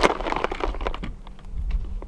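Irregular light clicks and taps, the sharpest right at the start, over a low steady hum.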